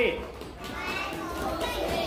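A class of small children's voices, a low jumble of chatter and calling out together.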